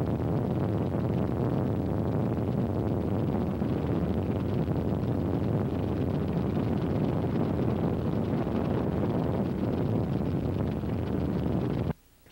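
Steady, loud rumble of a helicopter's rotor and engine heard from on board, cutting off abruptly at the end.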